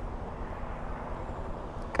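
Steady low vehicle rumble with no distinct events.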